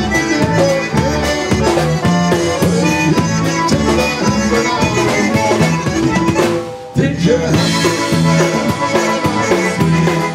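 Live polka band playing, with brass and saxophone over a drum kit. The music breaks off briefly just before seven seconds in, then comes back in full.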